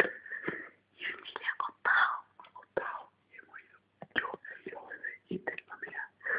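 Whispered speech in short, broken phrases.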